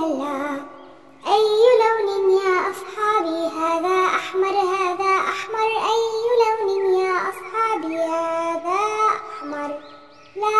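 A child's voice singing a melody over music, after a short pause about a second in.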